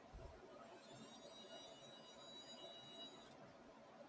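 Near silence with a faint, thin high whine lasting about two seconds from the motorized programmable stage of an X-ray fluorescence coating-thickness gauge as it moves the part into position.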